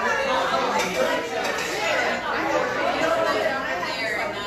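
Crowd chatter: many people talking at once in a room, the voices overlapping into a steady murmur with no single voice standing out.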